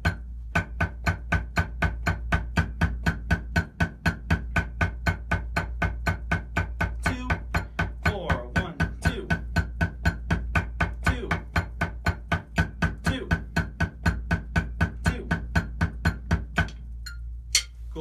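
Drumsticks playing an even stream of eighth notes on a rubber practice pad over a marching snare, about four strokes a second, in a rep of a checkpoint exercise. The strokes stop near the end.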